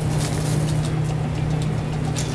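Steady low hum of commercial kitchen equipment, with a faint hiss and a few light clicks.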